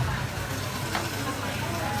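Food sizzling on a street stall's flat-top griddle, a steady hiss.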